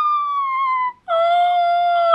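A woman's long, high-pitched squeal of excitement that sinks slightly in pitch and breaks off just under a second in, followed after a brief gap by a second, lower squeal held for about a second.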